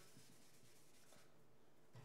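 Near silence with faint dry-erase marker strokes on a whiteboard.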